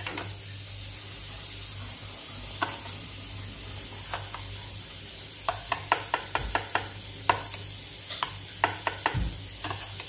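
A steel spoon stirring curd in a steel bowl, clinking against the rim: a few clinks in the first half, then a quicker run of them in the second half. Under it, a steady faint sizzle of chili-garlic paste frying in mustard oil.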